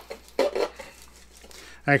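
A fine-toothed Zona razor saw drawn along a balsa wing rib to break up the glue under a piece of sheeting: one louder stroke about half a second in, then fainter scraping.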